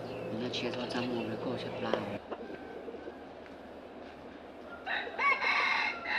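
A rooster crowing once near the end: a single loud call about a second and a half long.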